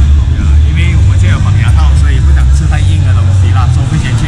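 A man talking over a loud, steady low rumble.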